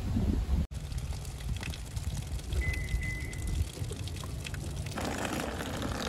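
Light rain falling on wet pavement, with a low rumble underneath. A short, high, steady tone sounds about halfway through, and a louder hiss comes in near the end.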